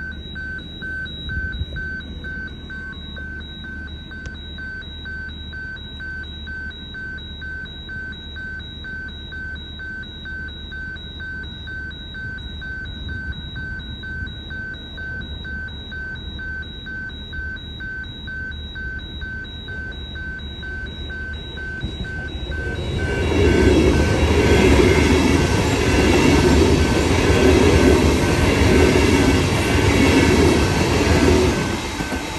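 A rapid electronic beeping in two high pitches pulses steadily, until about two-thirds of the way in a Queensland Rail electric suburban train comes up and passes close by, its wheels and motors running loudly over the track and covering the beeps.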